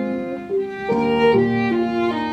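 Upright piano and violin playing a swing jazz tune together, the violin carrying held melody notes over the piano's chords.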